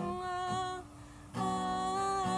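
A woman singing long, held wordless notes over a strummed acoustic guitar. The voice and guitar drop away for about half a second near the middle, then the singing comes back in.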